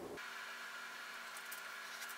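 Faint steady hiss of room tone with no distinct events; the knife going down through the soft, chilled cake makes no audible cut or knock.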